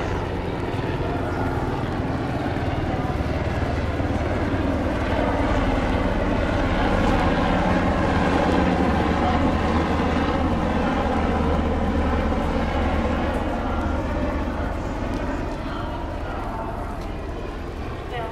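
A low engine drone that swells to its loudest about halfway through and then slowly fades, like a motor passing by.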